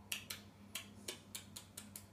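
A quick run of about ten faint kissing smacks and clicks, roughly five a second, with an African grey parrot's beak held to a woman's lips.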